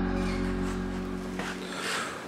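Background music with held tones, fading out over the first second and a half.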